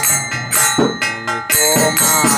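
Devotional kirtan: a man's voice singing held, bending notes, with small hand cymbals (kartals) ringing in a steady rhythm over a sustained low drone.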